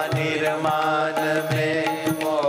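Devotional kirtan: a singer holding a wavering sung line over steady instrumental accompaniment, with drum strokes.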